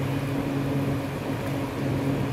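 Steady low hum with an even hiss underneath, the constant drone of room ventilation or an air-conditioning fan.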